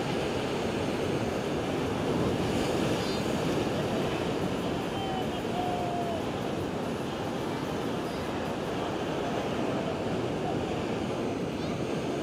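Steady, even noise of rough ocean surf breaking on a beach.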